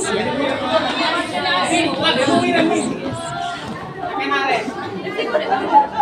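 Several people chattering at once, voices overlapping with no single clear speaker.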